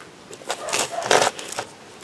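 Gloved hands working potting soil in a plastic tub and a small plastic plant pot: a few short rustling, scraping noises, the loudest a little over a second in.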